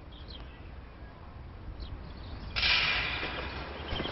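Quiet outdoor background at first. About two and a half seconds in, a steady hiss of outdoor noise comes in and slowly fades away.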